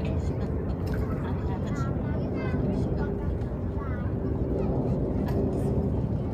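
Outdoor ambience: people talking, not close to the microphone, over a steady low rumble and a faint steady hum.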